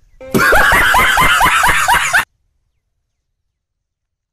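A loud burst of high-pitched laughter, about four rising 'ha's a second, lasting about two seconds and cutting off suddenly.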